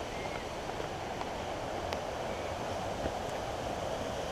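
Steady rushing of running creek water, with a few faint clicks over it.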